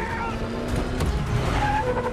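Action-film car-chase sound: a Humvee's engine running hard and tyres skidding, with a man yelling near the start.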